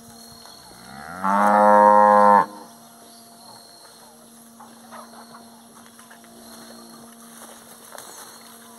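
Cattle bellowing in a corral: one loud moo about a second and a half long, rising in pitch at the start and then breaking off sharply. A much fainter, lower moo follows a few seconds later.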